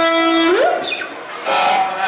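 Live indie rock band: a single held note slides up about an octave and fades. About a second and a half in, the band sound comes back in.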